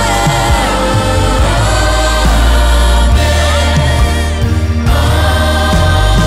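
Live worship music: several women singing on microphones over keyboard and a full band. The bass drops out briefly about four and a half seconds in.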